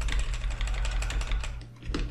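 Computer keyboard keys being pressed in quick succession, a run of clicks that thins out near the end, over a steady low hum.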